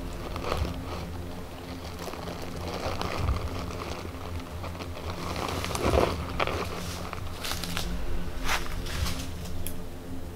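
Footsteps through dry leaf litter and weeds, with irregular rustling and crackling of brush, the loudest about six and eight and a half seconds in. A low steady drone runs underneath.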